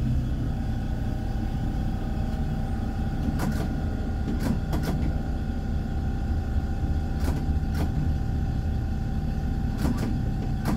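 Helsinki tram running slowly along the track, heard from inside: a steady low rumble with a steady high whine, and a handful of sharp clicks.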